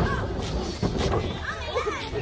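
Excited, high-pitched voices of people calling out and talking over one another, in bursts, while an alligator is being trapped under a trash bin.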